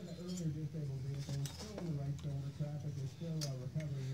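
A few light metallic clicks and clinks as a chainsaw's big-bore cylinder and crankcase are picked up and handled, over a faint voice talking in the background.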